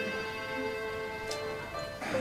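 An Irish traditional group of fiddles, concertinas and harps holding long sustained notes, with one sharp click about halfway through.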